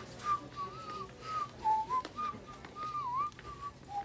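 A man whistling a tune: a string of short, clear notes with small slides up and down in pitch.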